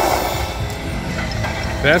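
Wicked Wheel Fire Phoenix video slot machine spinning its reels: electronic spin sounds and machine music, with a brief burst of sound as the spin starts, over casino background din.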